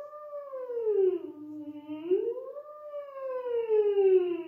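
A woman's voice doing a vocal siren exercise: one unbroken tone gliding slowly up, down, up again and down, with no stops between pitches. It is the continuous phonation practised to train legato.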